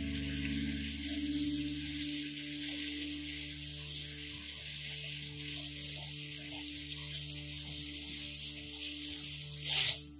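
Garden hose spray nozzle hissing steadily as a jet of water sprays against the shed's base. A brief sharp sound stands out near the end.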